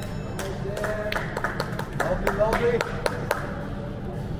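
About a dozen irregular hand claps over some three seconds, mixed with high, short cheering voices.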